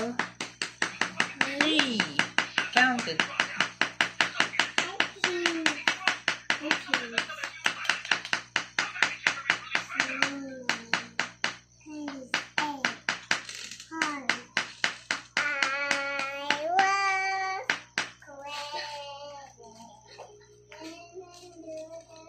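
Small wooden mallet striking a chisel into a plaster dig-kit block, quick even taps for about ten seconds, then a few more after a brief pause. A child's voice, partly sung, comes in near the end.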